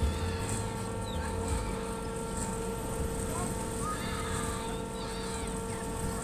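Fairground ambience heard from a Ferris wheel car: a steady mechanical hum holding several fixed tones throughout, with faint distant voices and a low rumble on the microphone in the first second or so.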